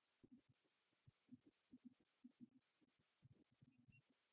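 Near silence: room tone with faint, irregular low thuds.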